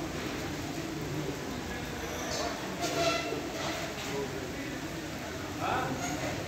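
Indistinct voices of people talking, over a steady low rumble of background noise.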